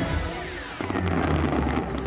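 Show music played over the park's outdoor speakers: a falling electronic sweep, then a fuller, bass-heavy section kicks in a little under a second in.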